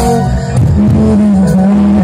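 A live rock band playing loud through a PA: drums, bass and electric guitar, with a long held note from about half a second in.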